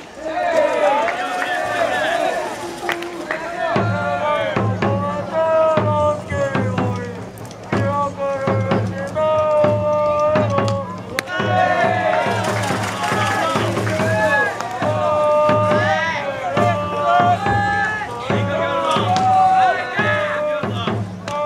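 Baseball cheering from supporters: many voices chanting and singing a cheer in unison. A steady drum beat joins about four seconds in.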